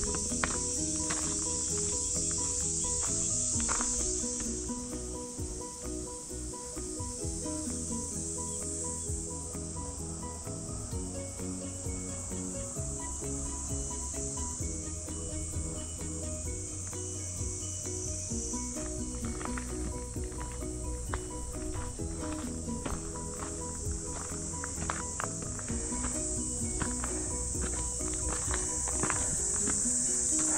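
A high-pitched chorus of cicadas buzzing, swelling and fading every few seconds, with background music underneath.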